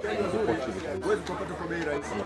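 Speech only: a man talking steadily, with other voices chattering faintly behind him.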